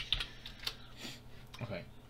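Keystrokes on a computer keyboard: a handful of separate key clicks as a short command is typed and entered.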